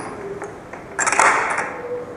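Title-sequence sound effects under a horror-show title card: a faint held low tone, with a short burst of hiss and crackles about a second in.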